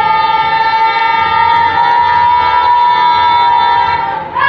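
A single voice holding one long, loud, high-pitched cry on a nearly steady note, which dips slightly in pitch near the end and breaks off right after.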